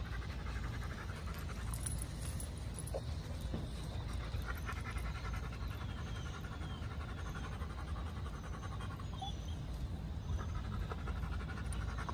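A dog panting in spells of a few seconds each, over a steady low rumble.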